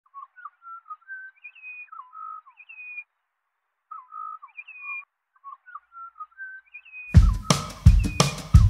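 Butcherbird song: short whistled phrases of gliding notes, repeated in groups with a pause of about a second in the middle. About seven seconds in, a drum kit comes in loudly with heavy kick-drum hits over it.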